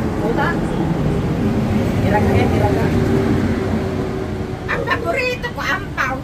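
A vehicle engine running with a low rumble and a steady hum, loudest in the middle, under people talking; the voices get louder near the end.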